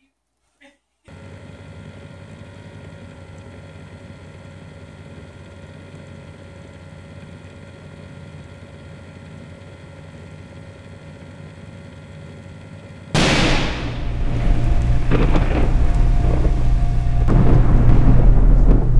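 Outro sound effects: a steady drone of held tones, then about thirteen seconds in a sudden loud thunder-like crash with a falling whoosh that runs on into a heavy rumble.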